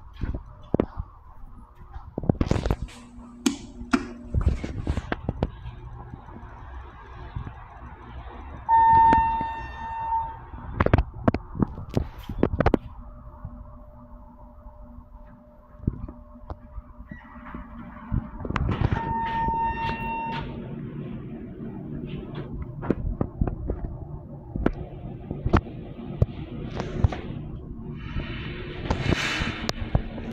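Knocks and clunks in a hard-walled elevator lobby, with two steady electronic tones about 1.5 s long, ten seconds apart, and a low steady hum from about halfway through.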